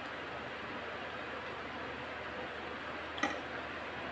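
Steady background hiss, with a single sharp click a little after three seconds in.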